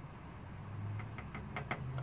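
A few light clicks and taps, clustered about a second in, from a multimeter probe being handled over a TV's LED backlight strip, with a faint low hum underneath.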